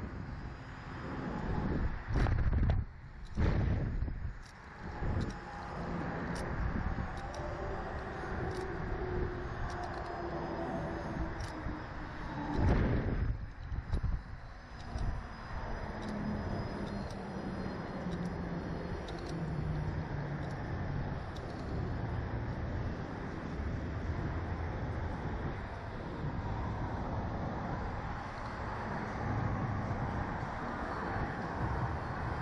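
Air rushing over a ride-mounted camera's microphone as a reverse-bungee slingshot ride capsule bounces and swings. It comes in strong gusts during the first few seconds and again about thirteen seconds in, then settles into a steadier rush as the swinging slows.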